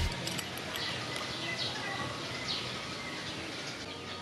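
Small birds chirping, short falling notes repeated about once a second over a steady outdoor hiss.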